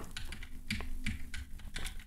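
Computer keyboard keystrokes: a run of quick, light key clicks as code is edited.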